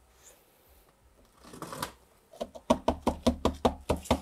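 A quick run of light knocks and taps, about eight a second, starting about two and a half seconds in, from hands handling a large subwoofer driver on its wooden cabinet.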